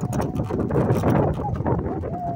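Wind buffeting a handheld phone's microphone, with rustling and handling noise as it is carried along, a steady low rush full of crackle. A few short chirps sound faintly near the end.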